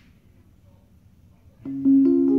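Electric keyboard played through a small cigar box amplifier: a quiet room at first, then sustained notes start loudly near the end, a second note joining a moment after the first.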